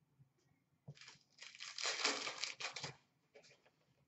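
A foil trading-card pack wrapper crinkling as it is torn open, a burst of about a second and a half in the middle, with a few faint ticks of cards being handled before and after.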